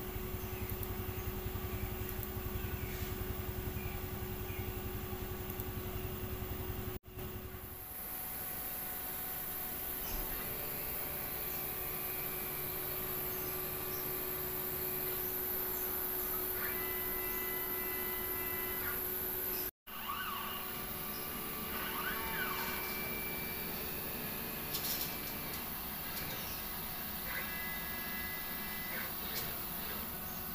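Steady machine hum and hiss of a CNC steel-plate cutting machine in the workshop, with a high steady hiss in the middle stretch. The sound breaks off sharply twice, about seven and twenty seconds in.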